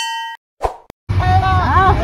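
Subscribe-button animation sound effect: a bright bell-like ding that fades out within the first third of a second, followed by a short click. About a second in it cuts to voices over a steady low engine rumble inside a vehicle.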